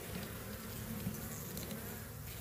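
Many honeybees buzzing around an opened hive, a steady low hum.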